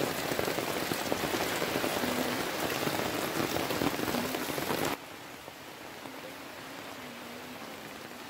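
Water from a garden hose splashing onto plants, leaves and soil: a steady patter that drops suddenly in level about five seconds in.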